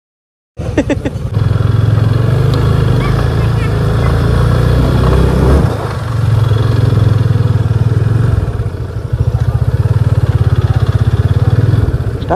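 Yamaha motorcycle engine running under the rider at low road speed, a steady fast pulsing of its firing strokes. It starts suddenly after a moment of silence and changes briefly about six seconds in, then carries on.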